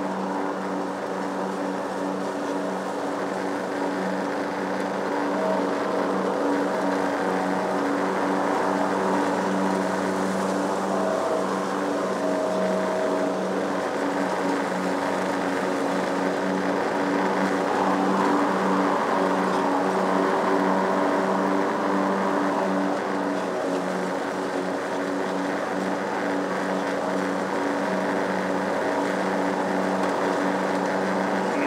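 Lawn mower's small engine running steadily under mowing load.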